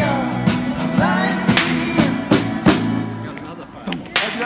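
Live rock band playing in the street: electric guitars with a small drum kit, playing the closing bars of a song. The last chord and drum hits stop a little past three seconds in.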